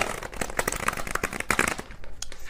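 Tarot cards being shuffled by hand: a dense, rapid clatter of card edges that starts abruptly and runs on without a break.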